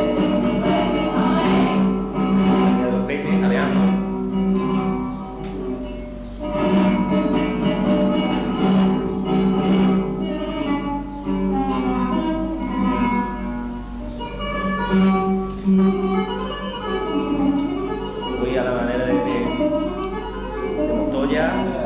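Flamenco recording played back over loudspeakers: a Spanish guitar accompanying a flamenco singer's gliding, ornamented voice.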